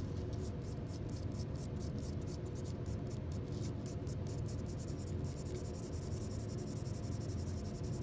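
Pencil eraser rubbing quickly back and forth on a silica-coated TLC plate, a soft, steady scrubbing over a constant low background hum.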